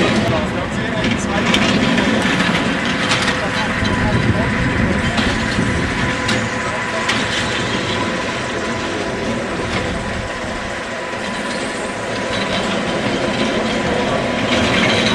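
Steel roller coaster car running on its track, a steady rumbling noise, with people's voices over it.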